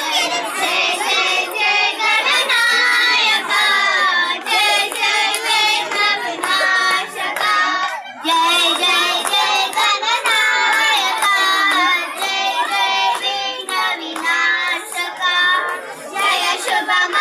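A group of children singing a Hindu devotional bhajan to Ganesha together in unison, with a brief pause for breath about halfway through.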